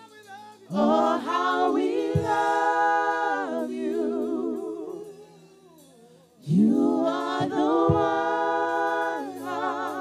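A small worship vocal group singing slow held phrases in harmony, with little or no instrumental backing. Two long phrases, the second beginning about six and a half seconds in after a short pause.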